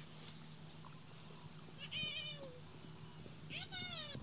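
Two short, high, wavering animal cries, one about halfway through and a second, rising one near the end, over a faint steady low hum.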